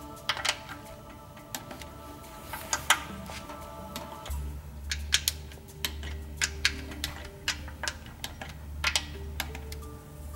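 Torque wrench ratcheting and clicking irregularly as the water pump's nuts and bolts are tightened, over background music whose bass comes in about four seconds in.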